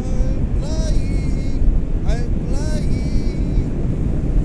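Airflow rushing over the camera microphone during a paraglider flight, a steady low rumble, with a few short whooping cries from a person that rise and fall in pitch, once near the start and again about two seconds in.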